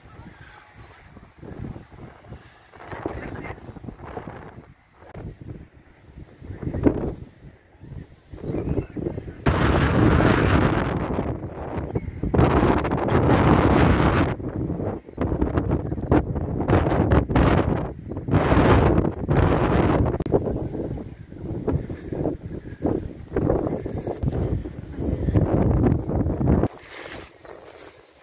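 Wind buffeting the microphone in irregular gusts, much stronger and more continuous from about ten seconds in.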